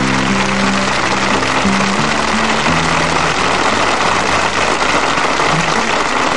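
Audience applause, steady throughout, over the song's last held closing notes, which end about halfway through.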